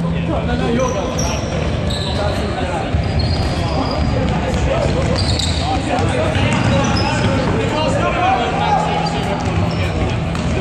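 Trainers squeaking and footfalls thudding on a wooden sports-hall floor as several players run, with shouted calls in the reverberant hall.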